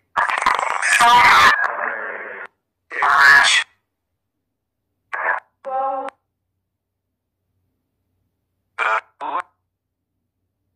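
Garbled, voice-like fragments from a necrophonic spirit-box app, played back in short snatches with dead silence between them. A longer run fills the first two and a half seconds, then brief bits come around three seconds, five to six seconds and nine seconds in. The uploader hears the first run as the words "in the middle".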